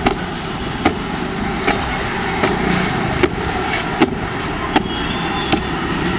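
Bajaj CT110X motorcycle's single-cylinder engine idling steadily, with a sharp tick repeating about every three-quarters of a second.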